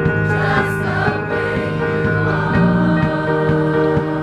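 A high school choir singing in harmony, the voice parts holding long, steady chords.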